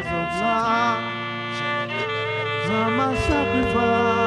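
Slow worship music: sustained string-like chords held under a voice that glides between notes.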